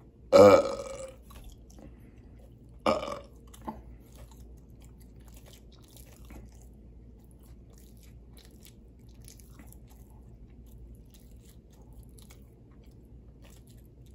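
Two burps: a loud, drawn-out one about half a second in, then a shorter, weaker one about three seconds in. After them come faint mouth clicks and soft chewing sounds.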